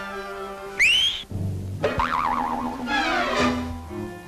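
Cartoon orchestral score with comic sound effects: a sharp rising whistle glide about a second in, a sudden thud about two seconds in, then a wobbling, wavering tone and a rising sweep, scoring a character's fall and knock on the head.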